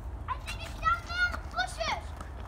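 Children's voices, high-pitched and indistinct, calling out in short bursts.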